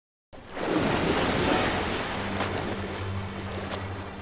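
Ocean surf rushing in, loudest in the first second and a half and then easing, with a low steady hum joining about two seconds in.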